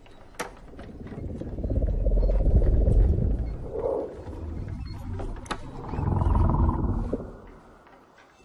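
Film sound effect: a deep, growling rumble that swells twice, with a sharp click near the start and another partway through.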